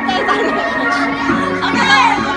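Music playing for a game of musical chairs, with a crowd of young children shouting and chattering over it.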